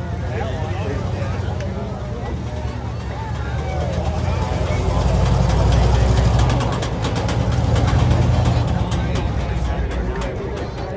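Monster truck engine running as the truck drives across a dirt field. It grows louder toward the middle as the truck passes close and stays strong as it pulls away, with crowd chatter over it.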